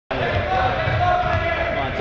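A basketball being dribbled on a gym floor during a game, its bounces dull low thuds under a steady murmur of players' and spectators' voices.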